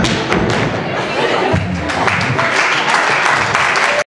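Line-dance music ends with a couple of sharp thumps at the start. From about a second and a half in, a dense patter of clapping with voices from the audience follows.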